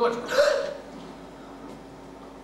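A brief vocal exclamation from a stage actor in the first half-second or so, then only a faint steady hum of the hall.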